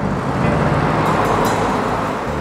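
Cars driving past close by on a road: a rush of engine and tyre noise that swells about a second in and eases off.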